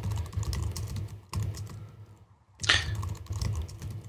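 Typing on a computer keyboard: a quick run of key clicks, a short pause a little after two seconds in, then more keystrokes.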